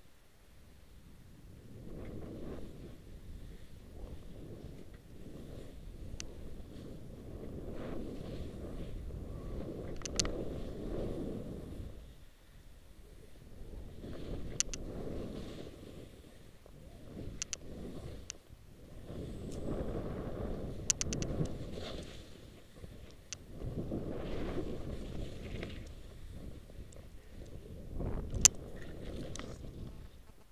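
Skis running through deep powder snow in a run of turns, each turn a swelling swoosh of snow and wind rush on the camera microphone that fades between turns, with scattered sharp clicks and knocks.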